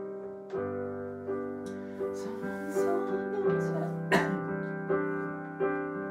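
Electronic piano played slowly, sustained chords changing about once a second. A single sharp click a little after four seconds in.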